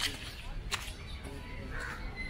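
A bird calling, with two short clicks in the first second and a call near the end, over a steady low rumble.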